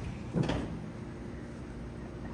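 A single short bump about half a second in, followed by quiet room noise.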